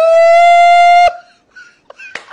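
A single loud held tone, horn-like, rising slightly in pitch at the start, then steady, and cutting off suddenly about a second in.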